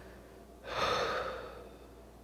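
A woman takes one audible breath lasting just under a second, starting about halfway through, with faint room tone either side.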